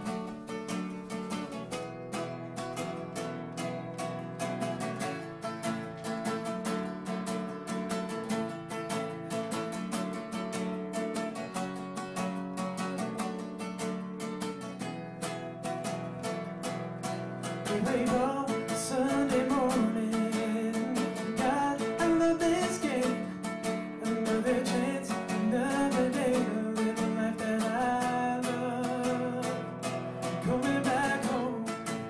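Acoustic guitar played solo in rapid, even strokes; about eighteen seconds in, a man starts singing over it and the music grows louder.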